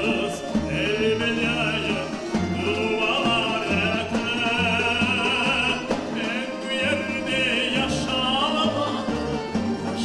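A man singing held notes with a wide vibrato, accompanied by a folk string ensemble of plucked lutes, double bass and accordion, with the bass keeping a steady pulse.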